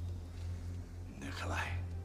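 A man's short, breathy whisper about halfway through, over a steady low rumble.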